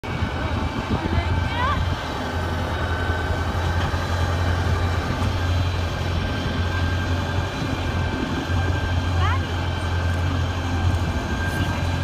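Tractor engine pulling a hay wagon, running with a steady low drone, mixed with wind noise on the microphone.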